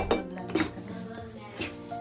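Stainless-steel mixer-grinder jar and its lid being handled: a few sharp metal knocks and clinks, the loudest right at the start, as the lid is fitted and the jar is lifted off its base.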